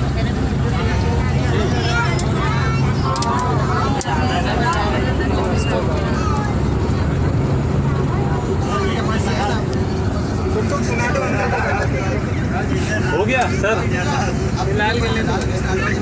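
Steady engine drone and road noise inside a moving bus, with people talking over it.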